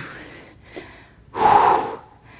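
A man breathes out hard once, a loud breathy puff a little past halfway through, lasting about half a second: an effort exhale on a hip-lift repetition.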